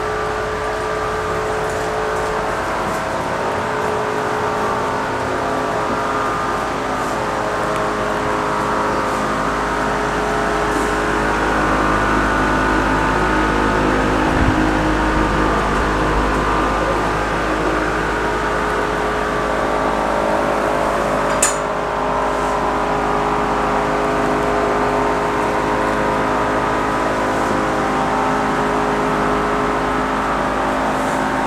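Many cooling fans of running GPU mining rigs whirring steadily and loudly, several steady hum tones over a broad whoosh of air, with a single sharp click about two-thirds of the way through.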